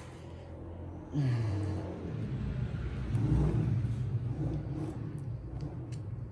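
A low engine rumble that swells about a second in and runs on for several seconds, its pitch dipping and rising a little, like a motor vehicle going by.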